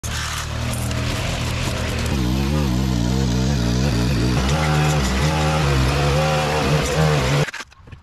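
Small engine of a string trimmer and stick edger running at high speed, its pitch rising and falling as it works. It cuts off abruptly about seven and a half seconds in.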